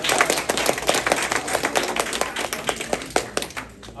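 An audience applauding with hand claps, which thin out and fade near the end.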